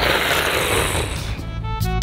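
A person's raspy roar imitating a big cat, lasting about a second and a half, with music notes starting near the end.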